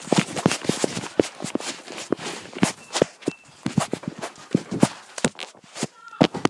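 A rapid, irregular run of sharp knocks and bumps, several a second, from a handheld camera being carried and handled close to its microphone.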